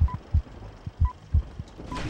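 Film countdown-leader sound effect: a short high beep about once a second over a heavy low double thump repeating like a heartbeat.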